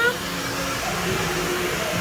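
Handheld hair dryer blowing steadily on hair just dyed red, with voices faint underneath.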